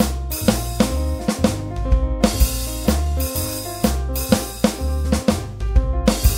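Jazz track: a drum kit plays a steady beat of bass drum, snare and cymbals over a bass line and held notes.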